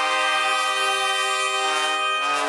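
Trumpet ensemble holding one long chord, with a couple of the voices shifting slightly near the end.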